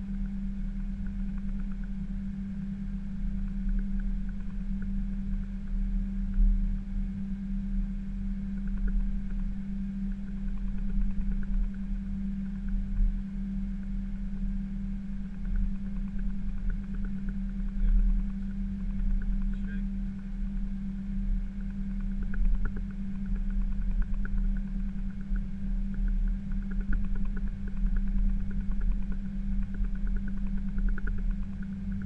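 Cockpit noise of an Airbus A320 taxiing: a steady droning hum with an uneven low rumble from the engines at idle and the aircraft rolling over the concrete.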